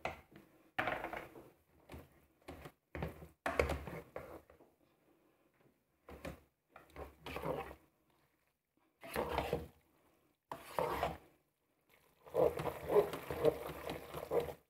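A spatula stirring spaghetti in thick cream sauce in the metal inner bowl of a Moulinex 12-in-1 multicooker. It makes short, irregular bursts of scraping and knocking against the bowl, with brief pauses between strokes.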